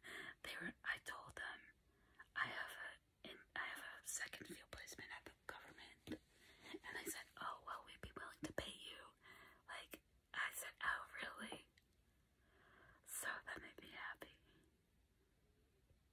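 A woman whispering in short phrases with pauses, stopping near the end.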